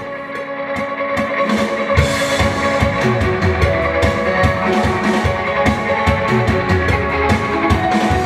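Rock music: sustained electric guitar chords, with a drum kit coming in about two seconds in and keeping a steady beat.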